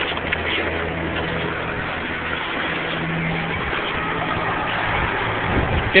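Steady noise of an ice rink heard while skating along it: a constant hiss of skates and room noise with a faint low hum under it.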